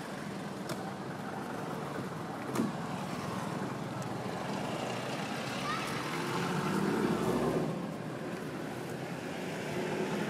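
A motor vehicle passing: a low rumble swells about six seconds in and fades by eight, over a steady outdoor hiss. A single sharp click comes about two and a half seconds in.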